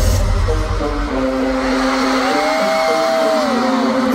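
Live pop concert music in a break: the bass and beat drop out about a second in, leaving held synth tones, one of which rises and falls in pitch near the end, over a steady wash of crowd noise.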